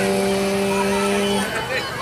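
One long, steady horn-like tone on a single low note, cutting off about one and a half seconds in, over a background of fairground voices and noise.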